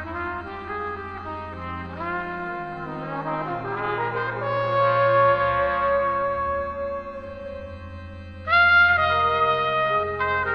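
Slow jazz with trombone and trumpet playing sustained, overlapping melodic lines over low held tones. A louder brass note comes in about eight and a half seconds in.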